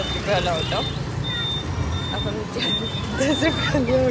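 Street traffic: a steady low vehicle rumble, with a thin high tone that comes and goes several times.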